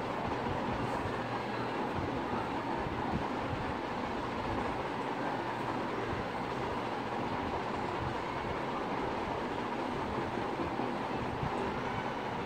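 Steady, even rushing noise with no breaks or rhythm.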